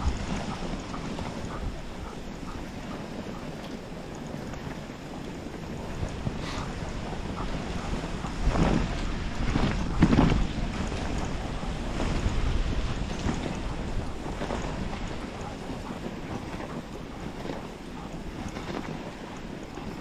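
Dog sled gliding along a groomed snow trail: a steady hiss of the runners on packed snow with wind on the microphone, and a couple of louder swishes about halfway through.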